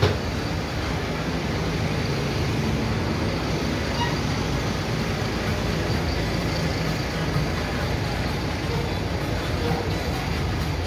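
Steady city street noise of buses and traffic running, a continuous low rumble with no distinct events.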